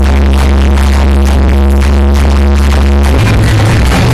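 Very loud electronic dance music with a heavy bass line, played over a DJ loudspeaker stack on a procession cart. A long held deep bass note gives way to a new bass pattern about three seconds in.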